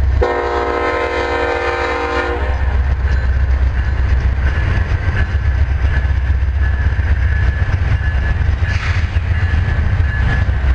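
Diesel freight train passing close by with a heavy low rumble, and a locomotive horn sounding one chord-like blast of about two seconds just after the start.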